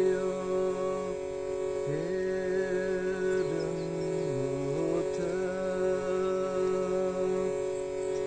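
A man's freestyle chant without words: long held vowel notes, each a second or two, gliding up or down into the next, over a steady instrumental drone.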